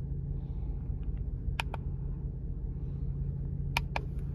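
Push buttons on an LED beacon's wired controller clicking in pairs, about a second and a half in and again near the end, as the flash pattern is stepped through. Under the clicks is a steady low hum of the truck cabin.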